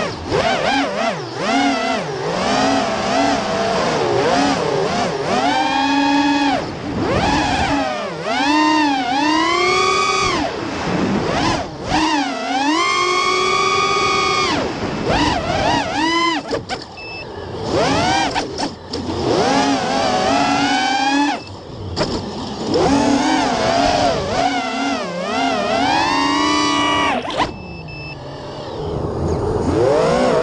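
Armattan Chameleon quadcopter's four Armattan Oomph 2206 2300kv brushless motors and props whining in flight, heard close up from a camera on the quad. The pitch keeps rising and falling with the throttle, and several times drops briefly as the throttle is eased off.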